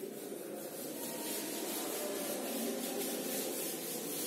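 A handheld eraser rubbing back and forth across a whiteboard, wiping off marker writing: a continuous dry rubbing noise.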